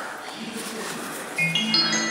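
Station platform approach chime: a short melody of clear bell-like electronic tones begins about one and a half seconds in, the signal that a train is about to arrive. Before it, only the hum of the platform.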